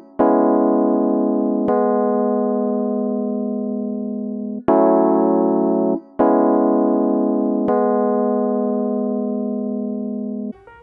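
GarageBand's Classic Electric Piano playing a slow chord progression in A major: two chords and a dyad, built on the key's two minor chords. Each is struck and held to ring out. The pattern of three strikes, about a second and a half apart with a longer hold on the third, plays twice.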